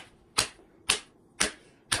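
Four short, sharp clicks, evenly spaced about half a second apart, like a steady countdown tick.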